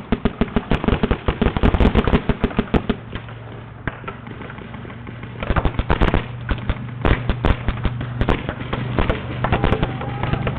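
Paintball markers firing in rapid strings of shots: a dense volley for about the first three seconds, a short lull, then more fast shooting from about five and a half seconds in.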